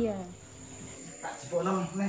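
Crickets chirping, a steady high continuous trill, with a voice briefly speaking over it at the start and near the end.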